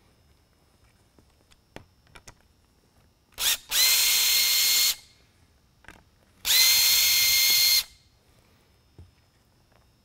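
Power screwdriver running in two bursts of about a second and a half each, each with a steady high whine, backing out the two small screws that hold a lighthead's cast housing to its lens.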